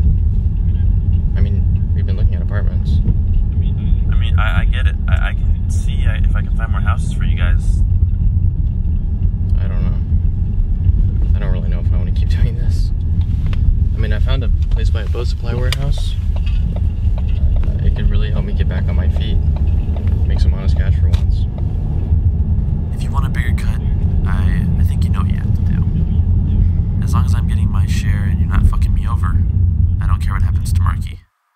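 Steady low rumble of a moving car heard from inside the cabin, with faint voices now and then.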